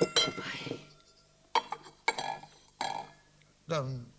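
Dinner plates clinking on a set table as a plate is handled and set down: a ringing clink at the start, then a few lighter knocks.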